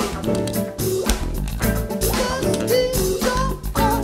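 Live band playing an upbeat funk-style song on electric guitar, bass guitar, drum kit and keyboard, with a male lead vocal coming in around the middle.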